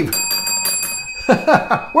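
A small bell ringing rapidly for just over a second: one high, bright ringing tone struck many times in quick succession, which then stops.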